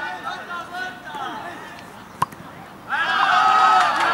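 Men talking, then shouting loudly from about three seconds in, at a football match. There is one sharp knock just past halfway, the sound of a football being kicked.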